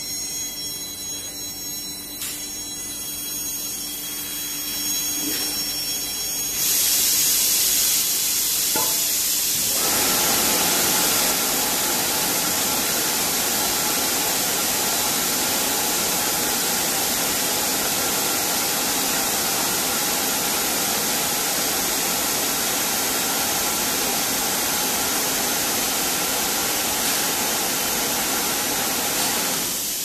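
Vacuum forming (thermoforming) machine for refrigerator liners at work. A steady machine hum gives way, about six seconds in, to a loud hiss of air. A few seconds later it widens into a steady rush of air that stops shortly before the end.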